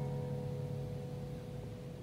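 Final chord of an acoustic guitar accompaniment ringing out and slowly fading away at the end of a song.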